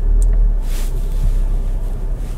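Low, steady rumble inside the cabin of a SEAT Tarraco SUV as it reverses slowly out of a parking space, with a short hiss about three quarters of a second in.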